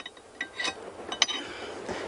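A few light metallic clinks as a water-ski boom's metal post is moved in its height-adjuster bracket, metal tapping on metal with a short ring.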